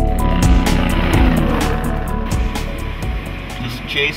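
Background music with a beat, over the rushing road noise of a vehicle passing on the highway, which fades away over about three seconds.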